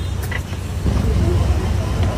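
Low steady rumble of a vehicle engine and street traffic, with faint voices in the background from about a second in.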